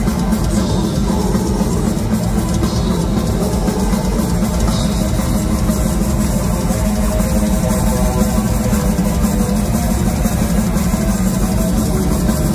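Death metal band playing live: heavily distorted electric guitars and bass over a busy drum kit, loud and continuous.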